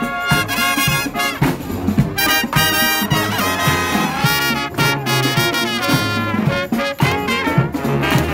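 Marching band of saxophones, trumpets, trombones, sousaphone and drum playing a tune together, the brass and saxophones carrying the melody over a steady bass beat.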